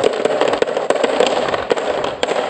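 Glass marbles rolling down a wavy groove in a wooden slope and dropping into the plastic bed of a toy dump truck: a dense, continuous clatter of small clicks as they knock against the wood, each other and the plastic.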